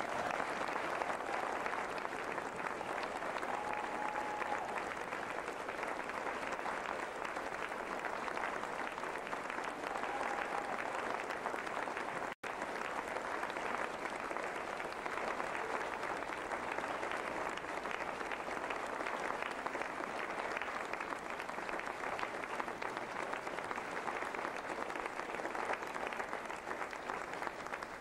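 Audience applauding, steady and sustained, with the sound cutting out for an instant about twelve seconds in.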